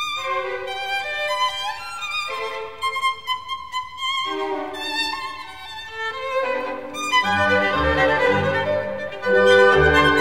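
Classical music: a violin playing a flowing melody of changing notes, with a lower bass part joining about seven seconds in.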